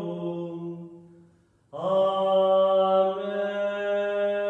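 A man's voice chanting a hymn in long held notes: one note fades away, a short pause follows, and a new note begins just under two seconds in and is held steady.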